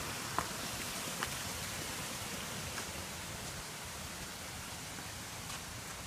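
Steady, even hiss of outdoor background noise with a few faint clicks.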